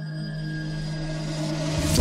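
Film background score: a sustained low drone under a rising whoosh that swells steadily louder and brighter, peaking at the very end as a deep hit lands.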